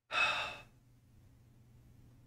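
A man's single short sigh, a breath let out for about half a second.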